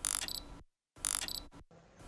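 Two short, mechanical-sounding sound-effect hits about a second apart, each a clicking burst with bright high ringing tones that cuts off abruptly.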